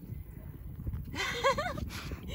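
A woman laughing briefly, a few quick rising-and-falling syllables about a second in, over a low rumble with soft thumps.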